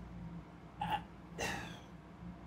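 Quiet mouth and breath sounds from a man between phrases: a brief mouth sound about a second in, then a short breath, over a low steady hum.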